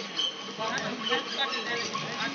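Several people talking over one another, with the hiss and crackle of a stick-welding arc struck near the end.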